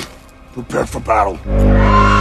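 A loud, deep, steady call begins about one and a half seconds in, with a higher tone over it, as warriors go into battle readiness; it follows a few brief, faint voices.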